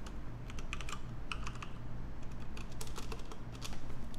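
Typing on a laptop keyboard: a quick, irregular run of key clicks, with no words over it.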